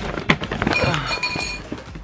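Bowls and plates clinking and knocking together as they are pulled out from under a bed, with one clink ringing on for about a second midway.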